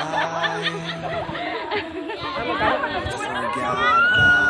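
A group of people chattering and talking over one another.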